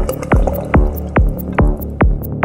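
Dark psychedelic trance music: a steady four-on-the-floor electronic kick drum at about 140 beats per minute over a continuous synth bass, with a wavering synth tone in the first half.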